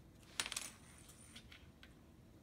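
A kitten batting a cord around on a wooden floor: a quick cluster of light metallic clinks with a short ring about half a second in, then two faint ticks.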